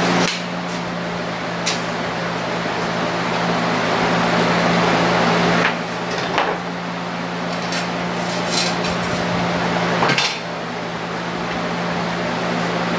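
A steady machine hum, like an air conditioner running, with a scattering of sharp metallic clinks and knocks from tools being handled at a workbench.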